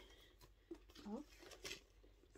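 Faint rustle of tissue paper being pulled out of a handbag, with one quietly spoken word about a second in.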